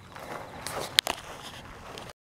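Footsteps walking through mown grass on a trail, with one sharp click about halfway through.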